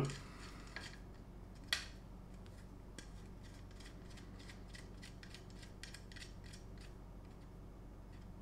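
Faint, small metallic ticks and clicks from a short threaded rod being screwed in by hand, with one sharper click a little under two seconds in.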